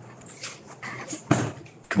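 A few short creaks and rustles as a man sits down at a table and handles papers, picked up by a table microphone, with faint room tone between them.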